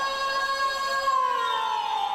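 A qawwali singer holding one long high note, steady for about a second and then sliding down in pitch.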